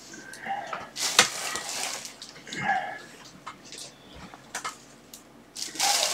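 Scattered light clicks, taps and rustles of small objects being handled on a workbench, with a louder rustle starting just before the end.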